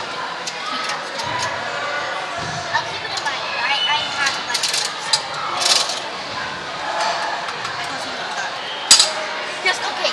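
Indistinct voices of players and spectators carrying through a large indoor hall, with scattered short clicks and one sharp thump near the end.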